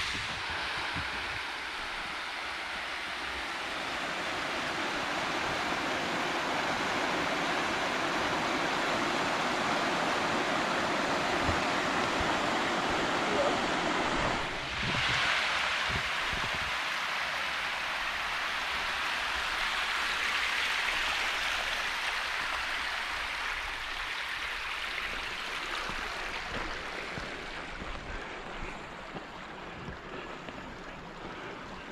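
Steady rush of falling water in a mountain gorge. After a short dip about halfway through, it gives way to a rocky hill stream splashing over boulders, which fades gradually near the end.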